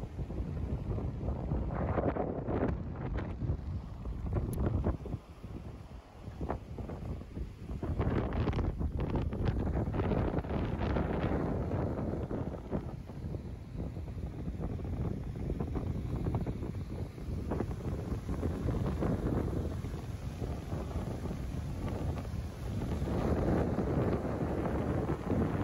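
Gusts of wind buffeting the microphone over the steady rush of the fast-flowing Kali Gandaki river.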